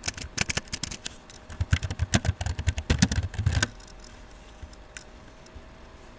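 Typing on a laptop keyboard: a quick run of key clicks, a short pause about a second in, then a longer run that stops a little past halfway.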